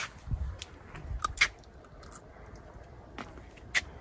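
Quiet handling noise: two low thumps in the first second and a half, and a handful of short, sharp clicks spread through the rest.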